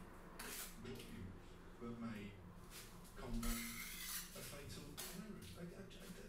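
A plastering tool scraping and smoothing wet sand and cement render into a wall angle, faint, in several short strokes with one longer stroke a little past the middle.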